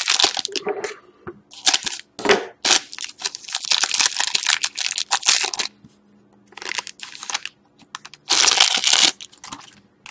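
Foil wrapper of a trading-card pack being torn open and crinkled by hand, in a run of crackling rustles with short pauses between them; the loudest crinkle comes near the end.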